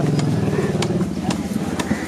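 An engine running steadily close by, with about four sharp knocks over two seconds from a heavy knife chopping through tuna on a wooden block.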